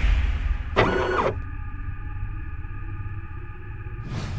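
Sci-fi sound effects for an animated mechanical intro: a short servo-like whirr about a second in, then a steady low rumble under a held drone of several humming tones.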